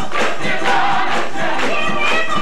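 Live gospel song: a woman singing lead over a choir, with a tambourine struck on a steady beat.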